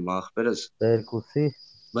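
A man's speaking voice in short phrases, with a steady high-pitched whine running beneath it.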